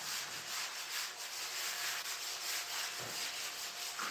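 Chalk being wiped off a chalkboard: a steady run of rubbing strokes across the board's surface.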